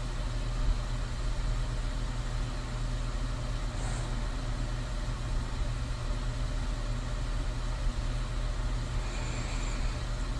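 Steady ambient background noise: a low, even rumble under a soft hiss, with no distinct events.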